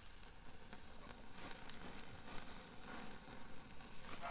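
Chicken thighs faintly sizzling and crackling on the grate of a charcoal kettle grill, directly over the coals where the skin is burning.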